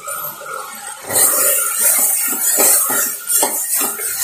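Metal spoon stirring raw split lentils into fried vegetables in an aluminium pressure cooker, scraping and clinking against the pot from about a second in.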